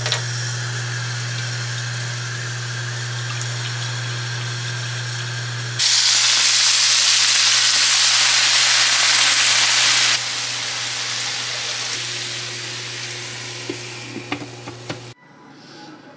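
Food sizzling as it fries in a pan, over a steady low hum. About six seconds in, a much louder hiss sets in for about four seconds, then dies down, with a few light clicks near the end.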